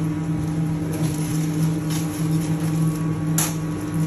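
Steady low hum of a commercial kitchen extractor hood fan, with a few short crackles of aluminium foil being handled, the loudest about three and a half seconds in.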